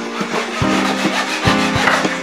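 Japanese pull saw cutting through a wooden strip with a steady rasping of repeated strokes, over background music.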